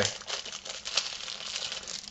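Plastic wrapping crinkling in a dense, continuous run of crackles as a small wrapped part is handled and unwrapped.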